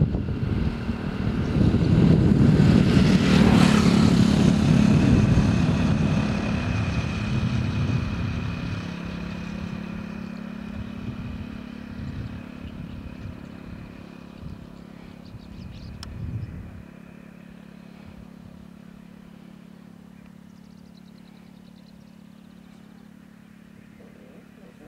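A motor vehicle passing close by, loudest a few seconds in and then fading away over about ten seconds, with a steady low engine hum continuing underneath.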